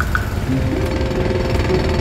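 Jackhammer sound effect, a rapid steady hammering, with background music coming in about half a second in.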